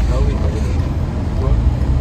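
Steady low road-and-engine rumble inside a moving van's cabin, under voices.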